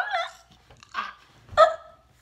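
A boy's high-pitched whimpering cries of feigned choking: a wavering one at the start, a short one about a second in, and another about a second and a half in.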